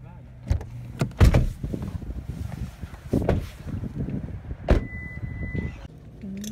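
Car interior door handle pulled and the door worked open, a run of clicks, clunks and knocks with the loudest about a second in and again near five seconds. A steady high beep sounds for about a second near the end.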